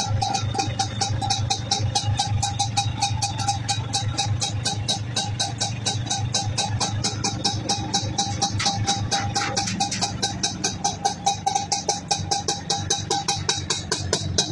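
Vespa auto-rickshaw's two-stroke engine idling steadily, with an even, rapid pulsing beat and some rattle.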